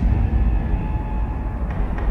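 Dramatic TV news intro music: a deep rumble comes in suddenly and holds steady.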